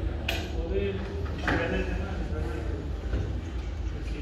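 Indistinct voices talking in the background over a steady low rumble, with two sharp clicks or clinks, one just after the start and another about a second and a half in.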